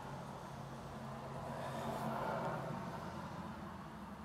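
Faint road traffic passing at a distance: a soft rush that swells and fades over about three seconds over a steady low hum.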